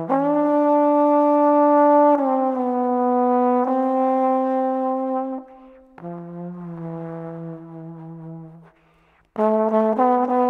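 Instrumental music led by a trombone holding long notes that change pitch every second or two. A softer, lower passage follows about six seconds in, then comes a brief near-silent gap before a loud note comes back near the end.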